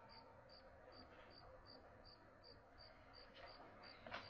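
Faint, steady chirping of a cricket, short high chirps repeating evenly about two to three times a second.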